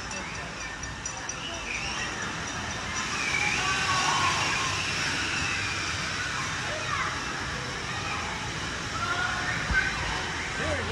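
Steady rush of water running through a water slide, with distant shouts and chatter from a crowd of swimmers in the pool below.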